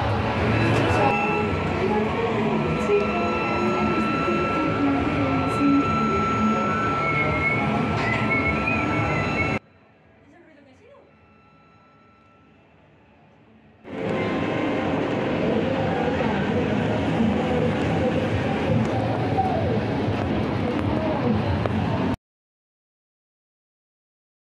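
Fairground din heard from up on a Ferris wheel: a mix of distant voices, music and ride machinery, with a steady high tone through the first part. It drops to a faint hush for about four seconds near the middle, returns, and cuts off to silence near the end.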